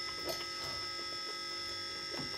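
Quiet room tone carrying a steady electrical hum made of several constant thin tones, some of them high-pitched, with a couple of faint small ticks.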